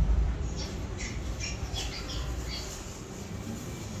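Scattered short squawks and chirps of recorded animal sounds from the exhibit's soundscape, mostly in the first half, over a steady low rumble.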